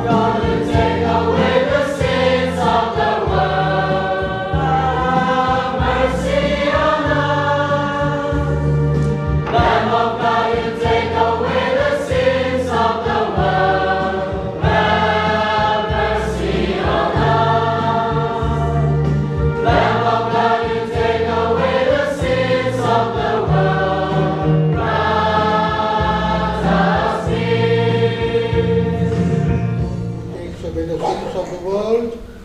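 Mixed church choir singing a hymn in phrases, accompanied by an electronic keyboard holding steady bass notes.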